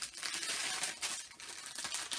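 Paper gift wrap crinkling and tearing as a small wrapped package is unwrapped by hand: a dense, continuous run of crackles and rustles.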